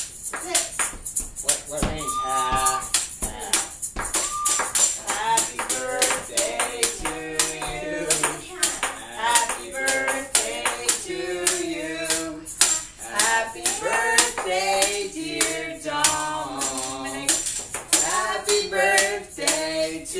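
Voices singing a song together over a steady rattling percussion beat.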